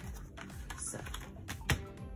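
Paper sticker sheets and cards being handled and shuffled by hand: a series of light taps and paper rustles, the sharpest near the end.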